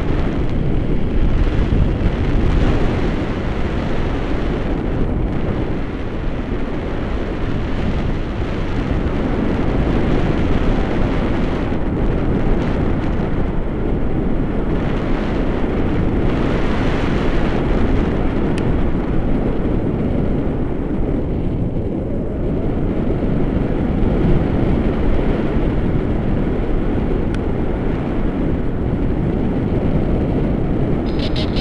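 Wind rushing over a paraglider-mounted camera's microphone in flight: a loud, steady, low rumbling roar with no breaks.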